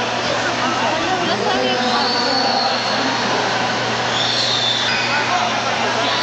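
Spectators talking and shouting over one another in a large hall, a steady crowd babble with a few long, high-pitched tones about two and four seconds in.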